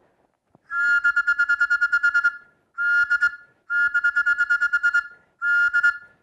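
Small hand-held whistle blown in four long blasts with short gaps, each a steady high tone with a fast flutter.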